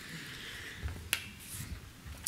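A single sharp click about a second in, over faint hall room noise, with a soft low thud just before it.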